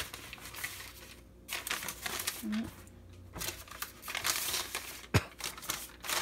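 Crisp, oven-dried sheets of annatto-dyed paper being handled, crinkling and rustling in several bursts. A sharp knock comes about five seconds in.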